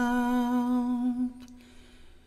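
A single voice humming one long held note, unaccompanied, that fades away about a second and a half in.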